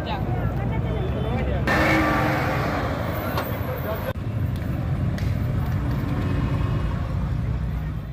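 A car burning: a steady low rumble of fire with a few sharp pops, and a louder hiss from about two to four seconds in.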